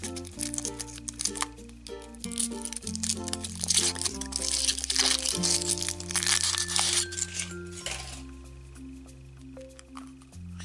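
Foil wrapper of a Kinder Surprise chocolate egg crinkling and tearing as it is peeled off by hand, busiest from about two seconds in until near the end, over background music with a steady bass line.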